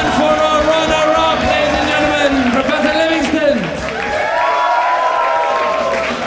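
Loud crowd noise: many voices shouting and cheering over music, with one voice sliding down in pitch about three and a half seconds in.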